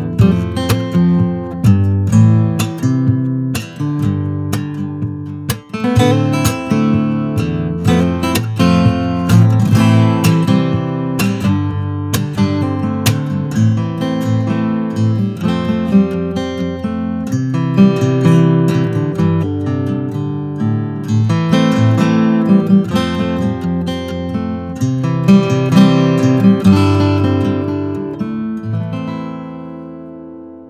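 Yamaha FSX830C acoustic guitar played fingerstyle: a continuous piece of plucked notes, bass lines moving under a higher melody, that dies away near the end.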